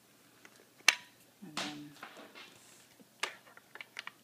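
A few sharp clicks in a small room, the loudest about a second in and another a little after three seconds, with a brief voice-like sound between them.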